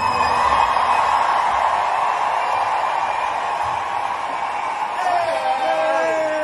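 Large stadium crowd cheering and screaming, a steady loud roar. Near the end a few pitched voices, sliding in pitch, rise above it.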